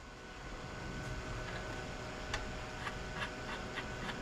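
Quiet background hum with a few faint, scattered light clicks from hands working at the wiring in an old metal box.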